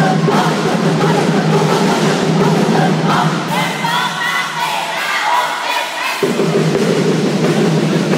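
Loud dance music for a group routine. Partway through the beat drops out, leaving a group of voices shouting together, and then the full music cuts back in sharply about six seconds in.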